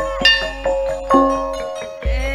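Javanese gamelan playing: struck metallophone keys ring out note by note, with three louder strokes over a steady held ringing tone, fading toward the end.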